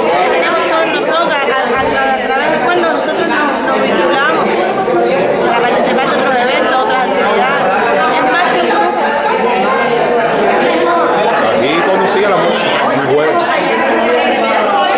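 Overlapping chatter of several people talking at once, too tangled to make out any one voice.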